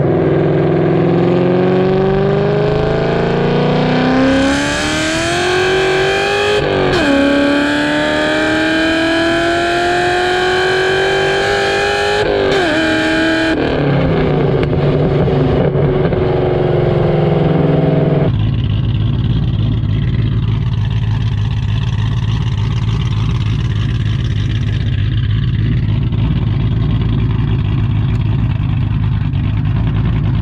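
Ford Mustang Mach 1's 4.6-litre DOHC V8 through an aftermarket exhaust, heard at the tailpipe while driving. It accelerates hard, its pitch climbing and dropping sharply at upshifts about 7 and 12 seconds in, then settles into a steady low cruising drone.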